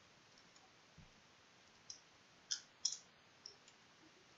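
Faint computer keyboard keystrokes: five or six separate clicks, spread out over the last three seconds.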